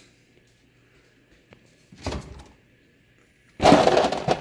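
Handling noise around an open refrigerator door: a soft knock about two seconds in, then a louder thump and rustle near the end.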